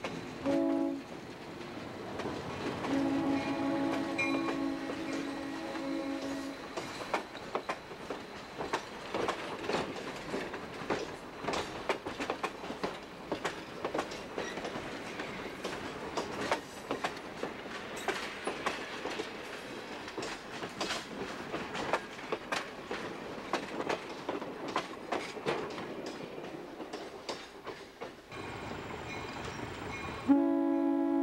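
Alco RS11 diesel locomotive's multi-note air horn sounding a short blast, then a longer one of about three and a half seconds, as it passes close by. Then the train's wheels click and clatter over the rail joints and switch as the passenger coaches roll past for about twenty seconds.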